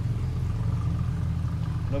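A steady low mechanical hum, like a distant engine running.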